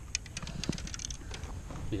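Scattered light clicks and small knocks of handling noise as a bass is worked in a landing net on a carpeted bass-boat deck, over a low rumble.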